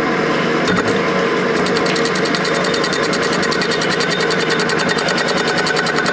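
Milling machine running with a steady hum. From about a second and a half in, a fast, even rasping joins it as a worn bimetal hole saw grinds into the bottom of a Pyrex dish through a slurry of silicon carbide and water.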